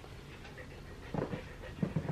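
Siberian husky panting close by: quiet at first, then a few quick breaths from about a second in.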